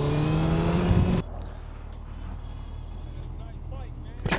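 Suzuki Hayabusa's inline-four engine pulling in gear, its pitch rising slowly, with wind rush on the mic. The sound cuts off abruptly about a second in, leaving a much quieter low engine idle.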